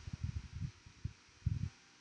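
A few soft, low thumps at irregular intervals, with a longer one about one and a half seconds in.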